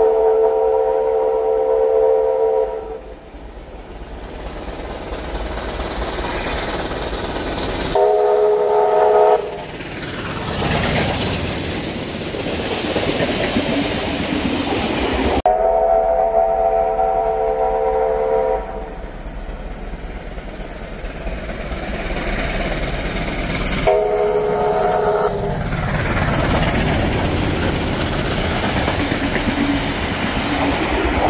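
Steam whistle of the NSW C38-class Pacific locomotive 3801, a long blast of several tones and then a shorter one a few seconds later, as the train approaches at speed. The rumble of the oncoming train then grows as it runs through the station. The whole sequence happens twice.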